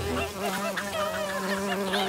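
Cartoon bee buzzing sound effect: a steady drone with a wavering higher pitch on top.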